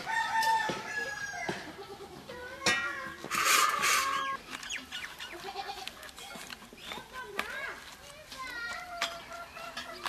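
Domestic chickens clucking, with a rooster crowing loudest about three seconds in.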